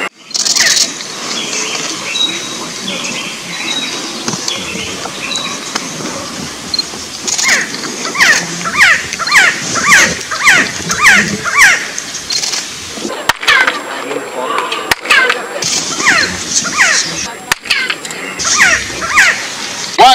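Hand claps in front of the stone stairway of the Kukulcán pyramid, answered by its chirped echo. There are a few sharp claps, then runs of short chirps that fall in pitch, about two a second, a sound likened to the call of the resplendent quetzal.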